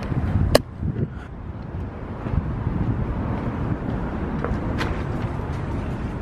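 Steady low rumble of outdoor background noise picked up on a handheld camera while walking. There is a sharp click about half a second in and a few lighter clicks later.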